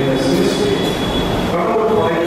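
A man preaching a sermon into a microphone, his voice amplified through the public-address system.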